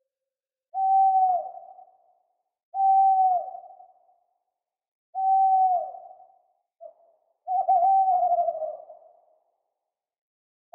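Owl hooting: four single hoots about two to two and a half seconds apart, each held on one pitch and dropping at the end, trailing off in an echo. A brief short note comes just before the last hoot, which is longer and wavers.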